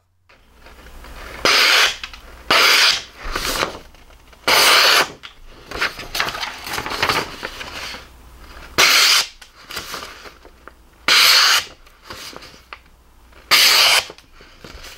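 Fixed-blade knife with a 14C28N steel blade slicing through a hand-held sheet of printer paper: about six short slicing strokes a second or two apart, with softer paper rustling between them. The edge is freshly touched up and cutting cleanly.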